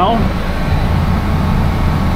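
A steady low rumbling drone of a running machine, with no distinct knocks or changes.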